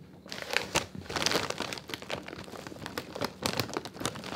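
A Ruffles potato chip bag crinkling as it is picked up and tipped to pour out chips, a dense, irregular crackle that starts about a third of a second in and keeps on.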